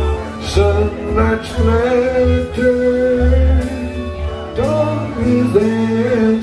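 Live rock band playing: electric bass, electric guitars and drums with cymbal strokes, under a male lead vocal.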